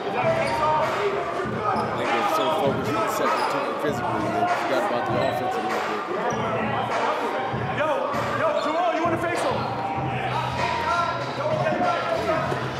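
A basketball bouncing on a hardwood arena court in a large echoing hall, amid voices.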